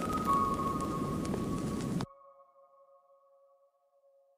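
The ending of an experimental electronic instrumental: a dense, noisy texture under held synth tones that step between pitches. About halfway through it cuts off suddenly, leaving a few faint sustained synth notes that fade out.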